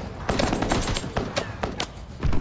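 Gunfire in an action film's soundtrack: a rapid, uneven string of sharp shots.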